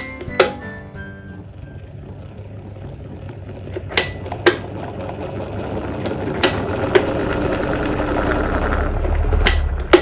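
Wall-mounted electric fan switched by its pull cord: sharp switch clicks, about eight spread through, while the whir of the fan's moving air grows steadily louder as it speeds up. Near the end the air stream adds a low rumble.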